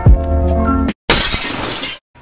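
Electronic intro music with a quick falling swoosh at the start, which stops dead about a second in. It is followed by a loud glass-shattering sound effect lasting just under a second.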